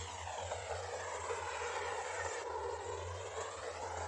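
Steady rushing noise of strong wind over open water, with no distinct events.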